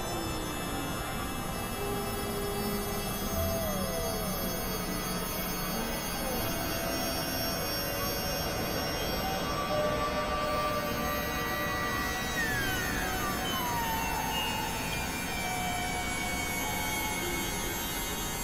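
Experimental electronic drone music: a dense bed of many held synthesizer tones over a rough, noisy low end, with occasional slow downward pitch glides, the longest about twelve seconds in.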